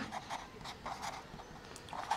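Marker pen writing on paper: a series of faint, short scratching strokes as characters are drawn.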